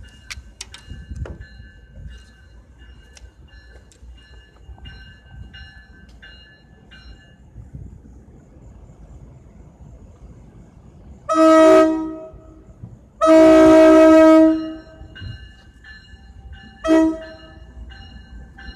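Locomotive horn sounding the grade-crossing signal as the train approaches the crossing: two long blasts, then a short one, each a chord of several tones. Before and between the blasts, a crossing bell rings faintly.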